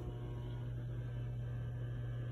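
Steady low electrical hum.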